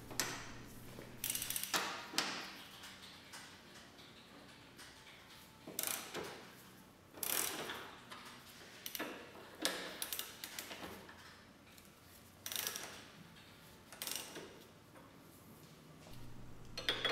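Socket ratchet clicking in several short bursts with pauses between, as the suspension fasteners are loosened.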